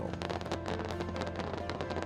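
Aerial fireworks crackling: a dense, rapid run of small pops and crackles from bursting shells.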